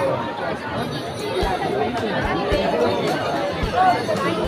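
Crowd chatter: many voices talking over one another at a steady level, with no single voice standing out.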